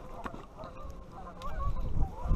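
Wind buffeting the action-camera microphone, with a few faint wavering calls in the background and a few light clicks.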